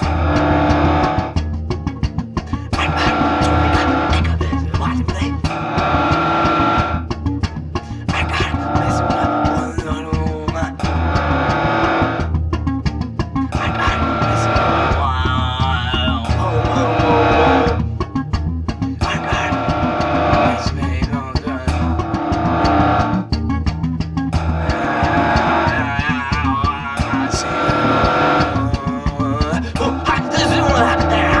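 Loud band music: a steady, heavy bass runs throughout, while guitars and upper parts drop out and come back every few seconds.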